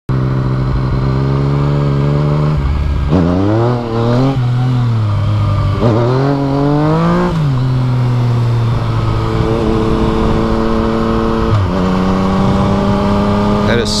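Yamaha FZ-09's three-cylinder engine under way, revved up sharply twice, about three and six seconds in, its pitch climbing and then dropping back each time, as in clutch-up wheelie attempts. It then runs at a steady pitch, with a step in pitch a little before the end.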